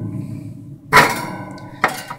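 Metal wire grate of a box fan clanging against the fan's housing as it is fitted back on: one sharp clang about a second in that rings on briefly, and a light knock near the end.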